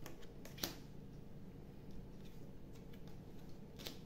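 A few soft clicks and taps of cards being handled and laid down on a table. The sharpest comes about half a second in, with another pair just before the end.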